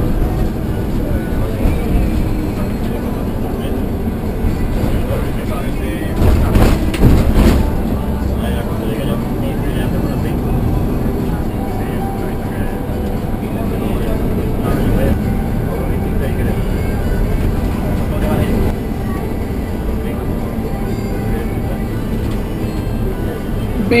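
Steady engine and road noise heard inside a moving bus on a motorway, with a short run of louder bumps or rattles about six to seven seconds in.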